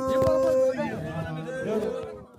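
Samburu men's traditional song: a group of male voices chanting, with one note held for the first moment, then voices sliding up and down in pitch and growing quieter.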